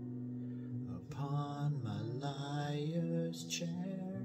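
A man singing slowly in a low voice, his notes bending and gliding over a steady, unbroken low drone, with a short breathy hiss near the end.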